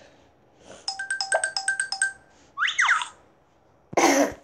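Short electronic sound effect from a children's story app: a quick run of about ten bright chiming notes lasting about a second, then a few quick falling swoops. A louder burst begins right at the end.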